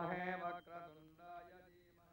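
A man chanting a Hindu sloka in long held notes, dying away near the end.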